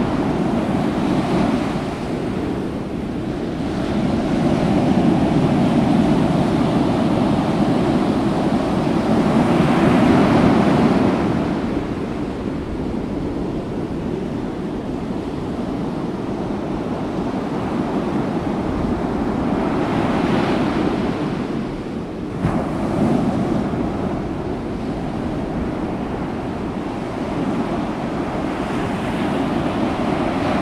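Wind buffeting the microphone over the wash of the open sea, a steady rushing noise that swells in gusts and eases off.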